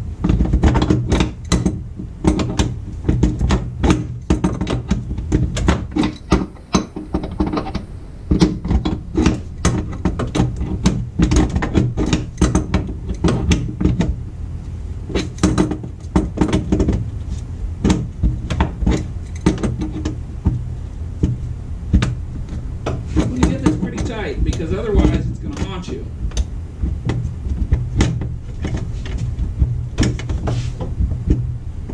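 Irregular metallic clicks and clinks of hand work on a transfer case shifter cable and its bracket under a Jeep, over a steady low hum.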